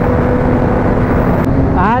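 Motorcycle cruising at steady highway speed: wind rushing over the microphone with a steady, even engine hum underneath. A man starts speaking near the end.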